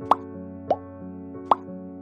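Three short pop sound effects, each a quick upward blip, about half a second or more apart, marking on-screen buttons popping into view. Soft, steady background music runs beneath them.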